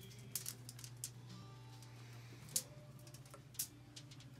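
Sharp plastic clicks and taps as a small plastic medicine cup and a plastic shaker bottle are handled and set down, a few scattered knocks with the loudest about two and a half seconds in, over a steady low hum.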